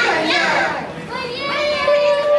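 High-pitched women's voices calling out in a playful sing-song, the last call held long on one pitch from about a second in.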